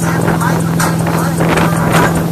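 Motorboat engine running steadily at towing speed, with water rushing and spraying in its wake and wind buffeting the microphone.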